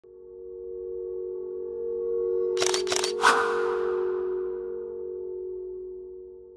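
Logo sting: a sustained synth drone swelling in, with three quick camera-shutter clicks a little before halfway, the last followed by a shimmering tail that fades out.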